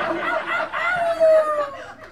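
People laughing, with one long, high, cackling laugh that slides slowly down in pitch through the second half.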